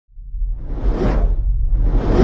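Cinematic whoosh sound effects over a continuous deep rumble: one swell rises and peaks about a second in, and a second one builds near the end.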